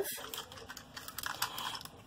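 Faint, irregular clicks and rustles of a handheld plastic SNAIL tape-runner adhesive dispenser being picked up and handled.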